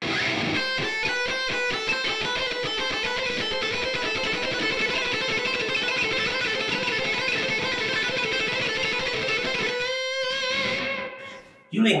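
LTD Deluxe electric guitar playing a fast alternate-picked exercise: repeating groups of six notes on one string, each note evenly timed, for about ten seconds, ending on a held note that fades out.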